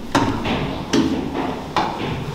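Footsteps coming down metal stair treads in a stairwell: three sharp steps about 0.8 seconds apart, each with a short ring after it.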